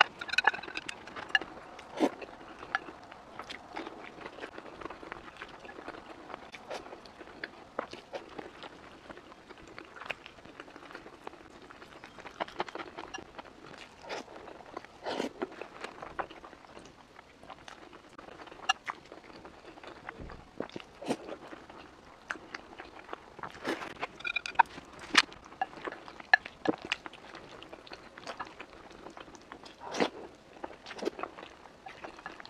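Close-miked eating sounds: chewing on a mouthful of rice and saucy food. Short irregular clicks of chopsticks and a wooden spoon against a glass bowl come through at scattered moments.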